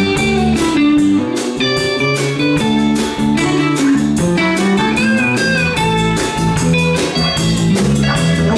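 Live band of electric guitar, electric bass and drum kit playing an instrumental passage of a blues-tinged rock song, the guitar to the fore over a steady beat of cymbal hits.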